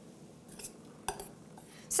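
Metal spoon lightly clinking and scraping in a stainless steel bowl while gently folding whipped egg white, with a few faint clicks around the middle and a sharper clink just after a second in.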